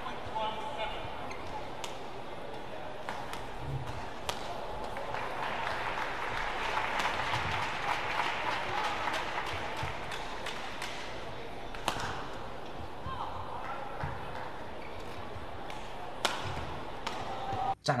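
Badminton match sound in an indoor arena: sharp racket strikes on the shuttlecock, a few seconds apart, over a steady murmur of crowd voices that swells for a few seconds midway through.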